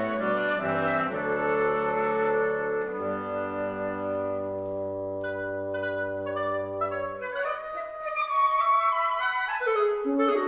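Wind quintet of flute, oboe, clarinet, horn and bassoon playing: moving chords at first, then a long held chord from about three seconds in with a sustained low bass note under it. Short, higher notes enter over the held chord, and near the end quicker, higher woodwind figures take over as the tempo picks up.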